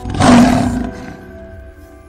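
A lion roar sound effect, loud and brief: it rises sharply at the start and fades within about a second, over held notes of music that ring on and slowly die away.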